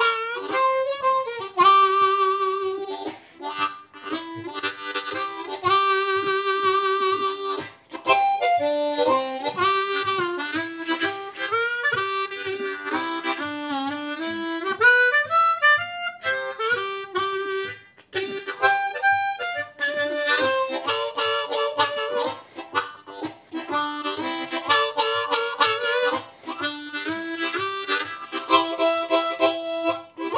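Unmodified Hohner Marine Band Deluxe diatonic harmonica played in phrases of single notes and chords, with short breaks between them. In the middle the notes bend, sliding down in pitch and back up.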